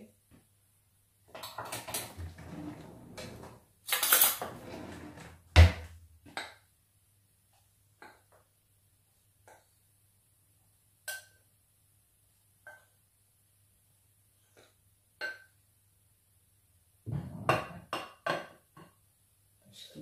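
Spoon and glass bowl clinking and scraping against a blender jar as flour is spooned into it: a few seconds of scraping early on, a sharp knock a little over five seconds in, then scattered light ringing taps and a quick run of clinks near the end.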